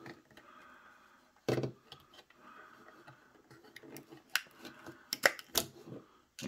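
A plastic shower caddy and its plastic suction-cup hooks being handled: quiet rubbing and rattling with a knock about a second and a half in, and a few sharp plastic clicks near the end, the loudest of them.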